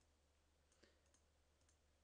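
Near silence: room tone with a few faint, short clicks about a second in.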